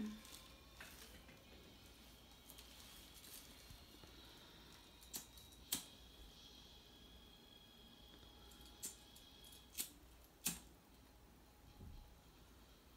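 Near silence: quiet room tone broken by four short, sharp clicks, two a little past the middle and two near the end, from small lab items being handled at the bench.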